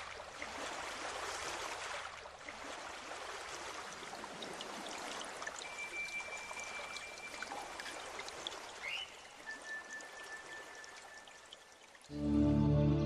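Faint running water like a trickling stream, with a long thin steady whistle tone about halfway through, a short rising chirp, then a lower held tone near the end, all fading away.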